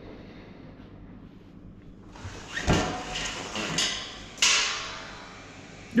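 Quiet room tone, then a knock about two and a half seconds in and a spell of swishing noise, followed by a second swish that starts suddenly and dies away over about a second.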